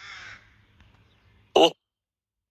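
Animated sloth character's cartoon voice: a soft, breathy falling sound at the start, then one short, loud "oh" near the end.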